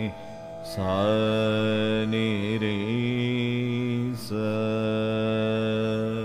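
A male Carnatic vocalist sings a slow ragam in Shankarabharanam, landing on the swara 'sa' and holding long notes that waver in ornamented glides. There are two sustained phrases, with a short break for breath just before the first second and another a little after four seconds.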